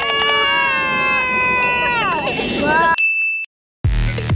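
Several children and a toddler shouting a long, drawn-out "heyyy" together, with a mouse click and a ding sound effect from a subscribe-button animation. The voices stop, a short chime rings, the sound cuts out for a moment, and electronic dance music starts near the end.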